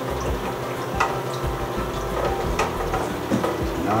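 A thermometer stirring freshly mixed photographic fixer in a mixing tank, knocking sharply against the tank twice, about a second in and again past halfway, over a steady low hum.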